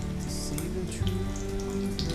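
Background music with long held notes, over the sizzle and crackle of slices of beef luncheon meat shallow-frying in hot oil in a pan.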